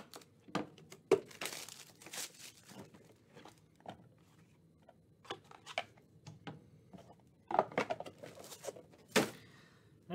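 Shrink wrap being slit and torn off a cardboard trading-card box, then packaging handled as the box is opened: crinkling plastic, a tearing stretch in the first few seconds, and a cluster of rustles and light knocks near the end as a plastic bag and a graded card slab are taken out.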